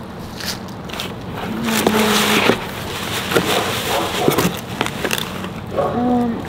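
Packaged snacks and food items rustling, scraping and knocking against each other and the cardboard as a box is rummaged through by hand, with a louder rush of noise that swells and fades about two seconds in.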